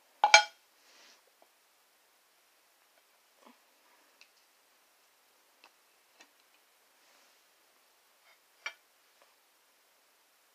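A fridge door being shut with a short, loud knock near the start. Then a few faint clicks and taps as a sauce bottle is handled, with a sharper click near the end.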